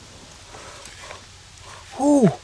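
Faint scrapes and a few soft ticks of a metal hand trowel and fingers working loose, dry soil.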